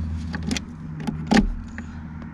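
Clicks and knocks of a 12 V car-socket plug being worked into the socket of a portable power supply, a few sharp taps with the loudest about two-thirds of the way in; the plug will not seat and make contact. A steady low hum runs underneath.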